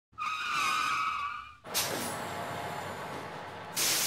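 Intro sound effect of a vehicle: a high tyre screech lasting about a second and a half, then a sudden burst of noise that settles into a steady hiss, and a second loud burst of hiss near the end like air brakes releasing.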